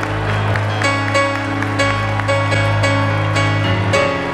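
Live church band music: sustained keyboard chords over a steady low bass note, the chords changing a few times.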